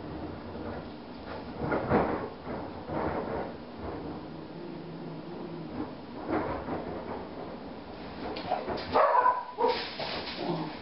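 A pet dog barking in several separate bursts, the loudest about two seconds in and near the end.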